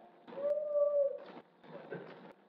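A single drawn-out, voice-like note lasting about a second, rising slightly and falling away, with a sharp click just after it begins.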